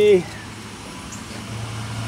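A steady low mechanical hum, like an engine running at idle, which grows a little stronger about three-quarters of the way in.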